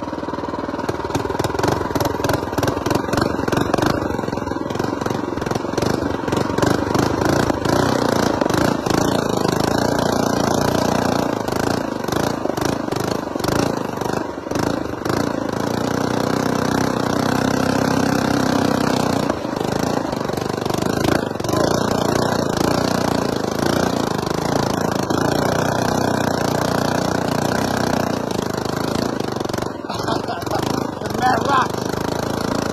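Small engine of a custom mini bike with a belt torque converter, running hard under load as it climbs a steep trail, its note rising and dipping a little with the throttle, over a steady rattle of bumps and buffeting.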